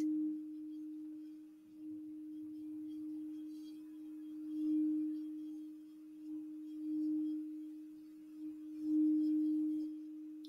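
Crystal singing bowl played by rubbing a wand around its rim: a single steady, low ringing tone that swells louder and fades back several times.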